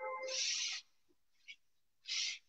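Whiteboard eraser wiping across the board: one long hissing stroke of nearly a second at the start, beginning with a brief squeak, and a shorter stroke at the end.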